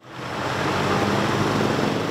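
Steady outdoor traffic noise, vehicles passing, rising quickly out of silence in the first half second.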